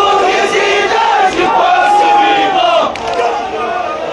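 Crowd of men chanting a Kashmiri noha lament together in loud, massed voices, with one voice holding a long note through the middle.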